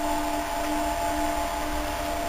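Steady whirring hum of running machinery, a constant rush with a few steady tones over it.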